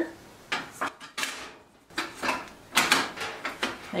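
Coil burner element and its metal drip bowl being seated back into a Frigidaire electric stove's burner well, with the element's prongs pushed into their receptacle: several light metal clicks and clanks with short pauses between them.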